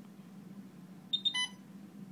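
Alaris PC infusion pump beeping about a second in: two quick high beeps, then a slightly longer, lower beep. A low steady hum runs underneath.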